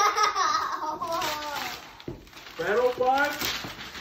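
Children's high-pitched voices and laughter, with wrapping paper rustling and tearing as it is pulled off a gift box.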